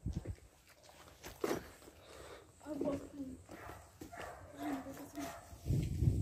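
Faint, distant voices and a dog barking, with handling noise and a low bump on the microphone near the end.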